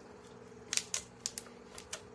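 A scatter of light, sharp clicks in the second half as fingertips and nails press and rub a rub-on floral transfer onto a painted tray, over a faint steady hum.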